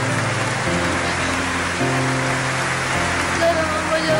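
Background music: low sustained chords that shift every second or so, under a steady hiss.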